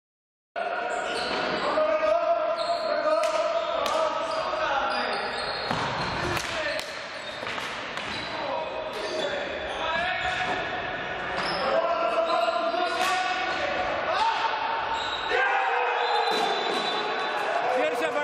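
Indoor hockey play in a sports hall: shoes squeaking on the wooden floor, sharp knocks of sticks on the ball, and players' shouts, all echoing in the hall. It starts suddenly about half a second in.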